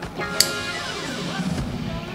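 Live band music led by electric guitar, with drums and sustained tones behind it; a single sharp hit stands out about half a second in.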